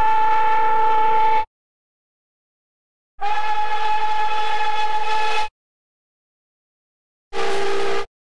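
Nickel Plate Road No. 587's cracked steam whistle blowing three blasts of a steady chord. The first cuts off about a second and a half in, the second lasts a little over two seconds, and the third starts near the end.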